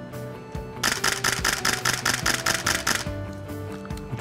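Nikon digital SLR firing a continuous burst of shutter-and-mirror clicks, a rapid even run starting about a second in and lasting about two seconds, over background music.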